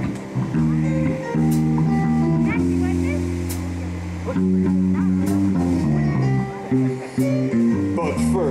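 Live rock band playing: sustained organ chords from a Hammond XK-1 with electric guitar and bass, and a cymbal hit about every two seconds.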